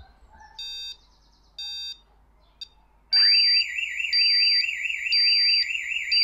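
Boundary home alarm's entry-delay countdown beeping once a second, then about three seconds in the alarm goes off: a loud siren with a fast warble and a higher beep pulsing about once a second. The entry delay has run out without the PIN being entered, so the alarm has triggered.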